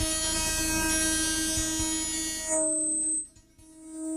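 A steady droning tone rich in overtones, like a held horn or synthesizer chord. It cuts out abruptly a little over three seconds in and comes back just before the end.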